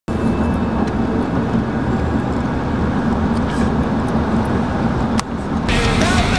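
Steady road and engine rumble heard from inside a moving van. Just before the end, after a short click, it cuts to loud rock music.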